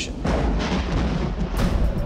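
Cinematic sound-effect boom: a deep, loud rumble under music, with a sharp crackle coming in about one and a half seconds in.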